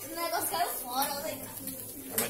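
Speech: a person's voice talking, with no other clear sound standing out.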